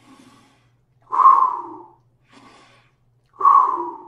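A man breathing deeply close to a microphone: a faint breath, then a loud one about a second in, then another faint breath and a second loud one near the end.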